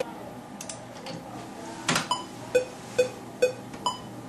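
Sparse stretch of an electronic R&B/hip-hop beat: over a faint held tone, one sharp hit about two seconds in, then short pitched synth blips about twice a second.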